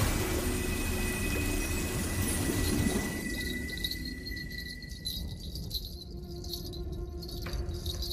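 Film soundtrack sound design: a shimmering, chime-like magical tone with a thin steady ring over a low drone, the shimmer fading out about three seconds in while the low drone carries on.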